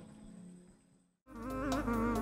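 Music fading out to a moment of dead silence, then a new piece of music starting with a wavering melodic line about a second and a quarter in.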